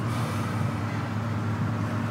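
Steady low hum of street traffic, with no distinct events.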